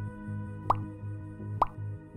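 Two short rising pop sound effects, a little under a second apart, marking on-screen clicks of a subscribe button and its notification bell, over background music with a steady low pulse.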